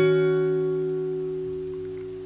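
Acoustic guitar chord left ringing, fading away slowly and evenly after being strummed.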